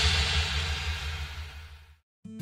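The closing music of a children's song fading out steadily, dying to silence right at the end.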